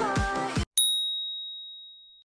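Music cuts off and a single high-pitched ding rings out, fading slowly over about a second and a half: a workout-timer chime marking the end of the rest break and the start of the next exercise.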